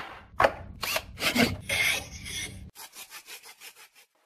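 Woodworking sound effects for an animated tool-icon transition: several loud rasping strokes, as of a saw on wood, then a run of quick light ticks, about six a second, from a little past halfway.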